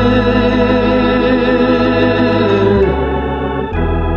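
Keyboard on an organ voice playing sustained chords, moving to a new chord just before three seconds in and again shortly before the end.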